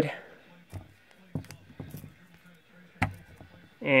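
A few light taps and knocks as fireworks canister shells are handled and swapped on a plastic digital kitchen scale, the sharpest knock about three seconds in.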